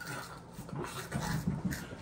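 A person's muffled breathing with a few short, low grunts or hums about a second in.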